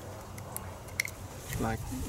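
A single short click as a push-on alligator-clip adapter is fitted onto a test-lead probe tip, over quiet handling noise; a man's voice starts near the end.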